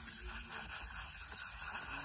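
A brush stirring ground pastel chalk powder in a paper cup, a faint, steady scraping and rubbing.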